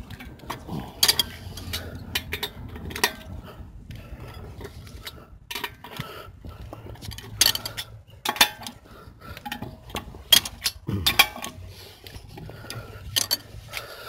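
A 21 mm steel socket on a long bar clinking against the lug nuts and wheel studs of a steel wheel as the lug nuts are broken loose one after another: sharp metallic clinks at irregular intervals.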